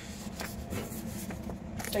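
Paper handling: a CD booklet being opened and unfolded, with a few faint rustles and ticks over a low steady hum.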